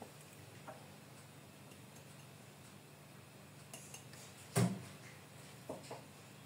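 Kitchen utensils knocking against a glass mixing bowl: a few faint clicks and one louder sharp knock about four and a half seconds in, with a smaller one near the end.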